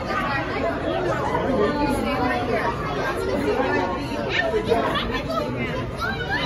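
Indistinct chatter of several overlapping voices, adults and children, with no single clear speaker.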